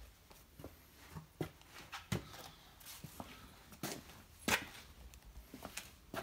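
Irregular knocks and crinkly rustles of items being handled and moved about, with a few sharper clacks, the loudest a little past the middle.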